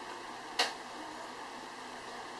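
A single sharp click about half a second in, over a low steady hiss.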